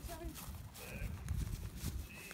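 Soft, irregular thuds of footsteps on a grass lawn with low rumble on the microphone, a faint voice at the start and a brief high chirp about a second in.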